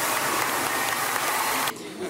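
Audience applause: dense, steady clapping that cuts off abruptly near the end.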